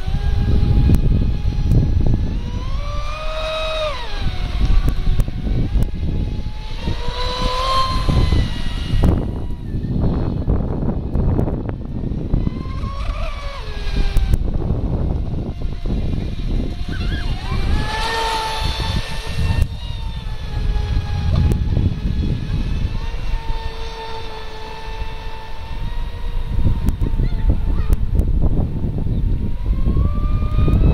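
TFL Pursuit RC speedboat's 6S electric motor whining across the lake, its pitch rising and falling several times with the throttle, over wind buffeting the microphone.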